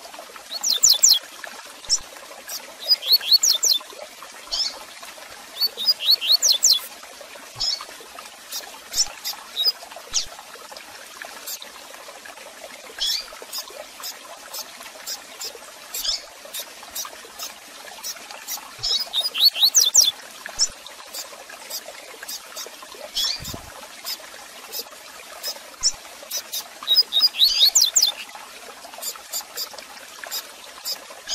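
Double-collared seedeater (coleiro) calling and singing in short bursts of quick, high chirping notes every few seconds, over a steady faint hiss.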